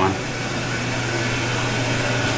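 Ventilation fan running steadily: an even rushing noise with a low hum underneath.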